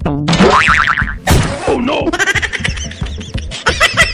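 Cartoon comedy sound effects over background music: a springy, wobbling boing with a sliding pitch, a sharp hit about a second in, then a fast repeating beat.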